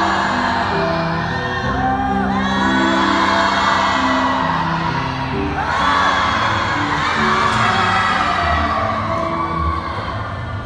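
Recorded music with singing, played loudly through a hall's sound system.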